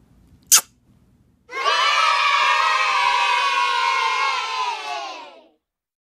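A brief kiss smack, then a group of children cheering and shouting together for about four seconds, fading out near the end.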